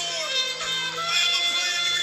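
Worship music: a voice singing over sustained keyboard chords, heard through a TV speaker.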